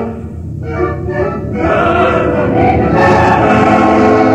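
Opera chorus singing in massed voices with orchestra beneath, softer at first and swelling louder about two to three seconds in.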